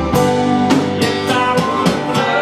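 A live band playing an instrumental passage with no vocals: a strummed acoustic guitar, held steel-guitar notes and drum-kit hits.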